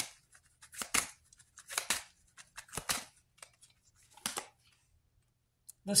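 Tarot cards being handled as the next card is drawn: a run of short card sounds, mostly in pairs about a second apart, stopping a little after four seconds in.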